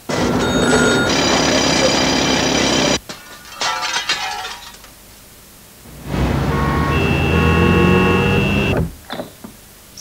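Commercial sound effects: a loud bell ringing starts suddenly and rings for about three seconds, then stops. A few short clicks follow, and then a second loud, steady sounds for about three seconds before it cuts off.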